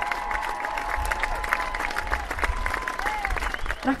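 Applause: a dense run of hand claps with voices calling out over it, welcoming guests just introduced on stage.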